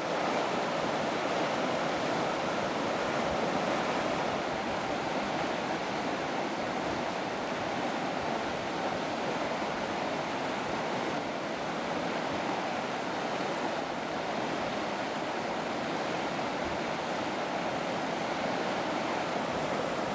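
Rapids on the upper James River, water rushing steadily over rocks in an even, unbroken wash.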